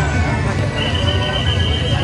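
Taiwanese temple-procession band playing drums and suona, with a high held note that starts about a second in and runs about a second and a half, over crowd noise.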